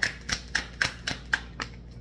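A deck of tarot cards being shuffled by hand: a quick run of sharp card snaps, about three to four a second.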